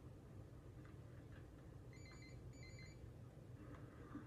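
Low steady background hum with two short electronic beeps about two seconds in, one right after the other.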